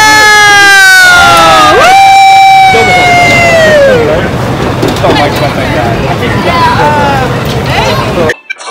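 Two people screaming on a reverse bungee ride, long high screams that slide slowly down in pitch, one after the other over the first four seconds. Softer voices follow near the end over a steady crowd murmur.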